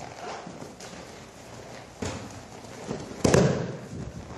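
Bodies thudding onto padded mats as attackers are thrown and take their falls, with feet pounding across the mat. There is a heavy thud about two seconds in, and the loudest impact comes about three and a quarter seconds in.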